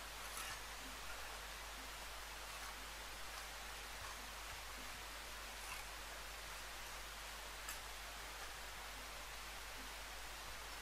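Faint scrapes and a few light taps of a steel bricklaying trowel working cement mortar onto a thin solid brick, over a steady hiss.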